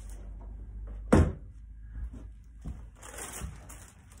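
A single heavy thud about a second in, as a clothes iron is set down on the table. It is followed by a few lighter knocks and a brief crinkly rustle of fused crisp-packet plastic being handled.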